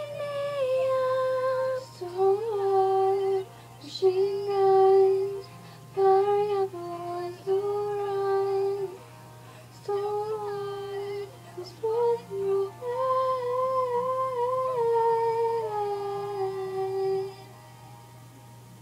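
A young woman singing a pop melody unaccompanied, in long held notes with short breaks between phrases, stopping shortly before the end.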